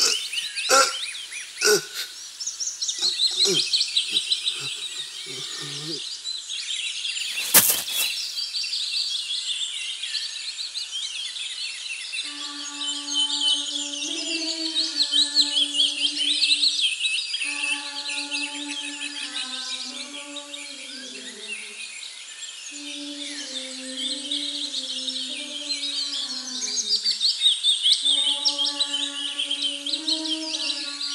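A dense chorus of birds chirping and twittering, with a few sharp knocks in the first seconds and one loud crack at about eight seconds. From about twelve seconds a slow, soft melody of held notes enters beneath the birdsong.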